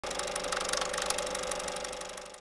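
A rapid, even mechanical clatter with a steady hum underneath, like a small machine running.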